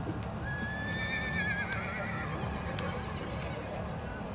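A horse whinnying once: a high call held level for about a second that then quavers downward, over a steady low rumble.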